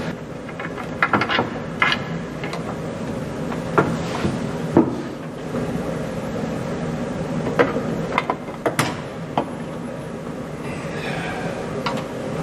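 Scattered wooden knocks and clicks as the wooden cover board above a church organ's pedalboard is handled and lifted off, exposing the pedal trackers. The sharpest knocks come about four to five seconds in and again near eight to nine seconds, over a steady low hum.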